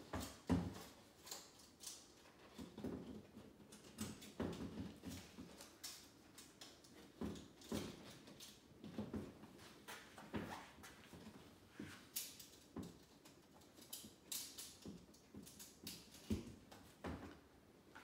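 Faint, irregular scrapes and light knocks, about one a second, of a picture frame being shifted against a wall as its back loops are hooked over two wall screws.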